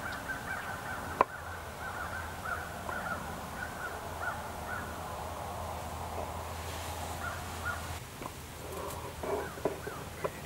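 Birds outside calling over and over in short calls, with a single sharp click about a second in.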